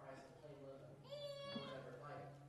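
Faint, distant speech from a person away from the microphone. About a second in, the voice rises into a higher-pitched, drawn-out sound for about half a second, over a steady low hum.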